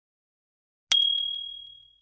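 Notification-bell ding sound effect: a sharp click about a second in, then one bright high ding that fades out over about a second.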